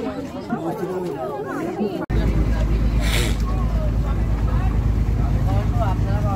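Chatter of a group of people, then, after an abrupt cut about two seconds in, the steady low drone of a riverboat's engine with people talking over it.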